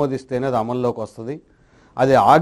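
A man speaking in Telugu in a lecture, stopping for a short pause near the end.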